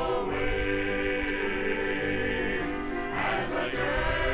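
Choral music: a choir singing long held chords that shift a couple of times.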